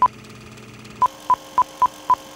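Film-leader countdown beeps: short, high, single-pitch beeps, one at the start, then a run of about four a second from about a second in, over a steady low hum.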